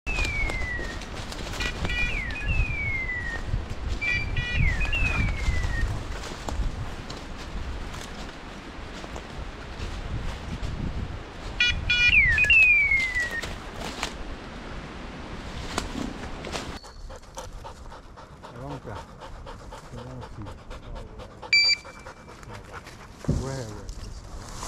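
A hunting dog's electronic beeper collar sounds bursts of rapid ticks followed by descending electronic chirps, several times in the first half and again about halfway through, with a single short beep near the end. Setters pant and rustle through dry bracken and dead leaves.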